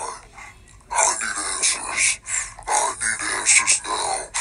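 A person's voice making indistinct, rough, speech-like sounds with no clear words, quieter for the first second and then continuing in short bursts.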